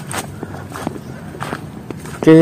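Footsteps on a muddy, sandy creek bank: a handful of short, uneven crunching steps over a steady outdoor background.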